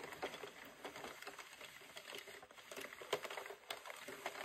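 Faint, scattered light plastic clicks from a circular knitting machine as it is handled, with a couple of sharper clicks in the second half.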